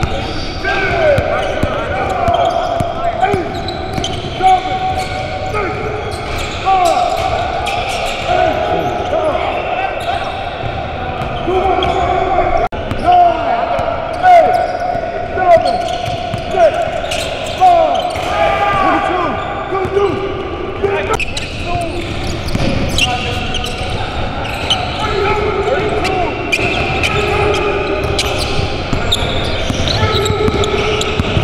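Basketball dribbled and bouncing on a hardwood gym floor in repeated sharp knocks, with many short squeaks of sneakers on the court. Players' voices call out throughout, echoing in the large gym.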